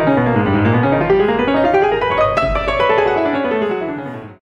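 Solo piano playing a flowing classical passage, its melodic line falling and then rising, fading out near the end.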